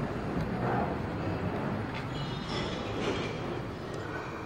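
Steady rumbling background noise with a faint low hum, without distinct events.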